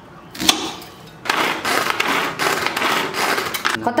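A knife knocks once on a wooden chopping board about half a second in. From just over a second in, a hand-pull vegetable chopper runs with a continuous rattling whirr for about two and a half seconds as its blades chop onion and green chilli in a plastic bowl.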